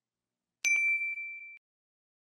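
Notification-bell sound effect: a single bright ding about half a second in, ringing out and fading over about a second.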